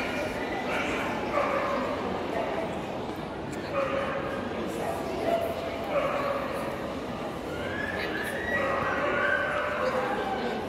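Dogs barking and yipping at intervals over a background of crowd chatter.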